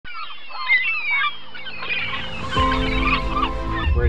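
A flock of birds calling with short wavering honks and squawks, then background music comes in about halfway through.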